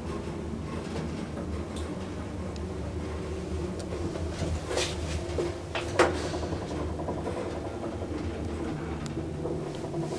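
Passenger elevator car running between floors: a steady low hum, with a few clicks and knocks, the loudest about six seconds in.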